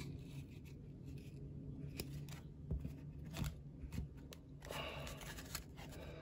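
Faint handling of a stack of paper baseball cards: soft clicks as cards are slid from one side of the stack to the other, a longer rustle near the end, over a steady low hum.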